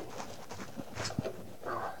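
Large chef's knife cutting the hard stem end off a raw sweet potato on a wooden cutting board, with one sharp knock a little over a second in.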